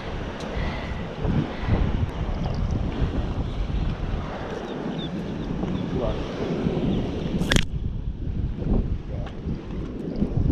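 Wind buffeting the microphone, a dense low rumble that rises and falls with the gusts, with a brief hiss about seven and a half seconds in.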